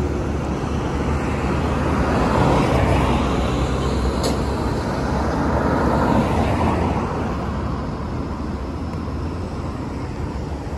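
Road traffic passing close by: a steady rumble of cars, with one car swelling past about two to three seconds in and another about six seconds in.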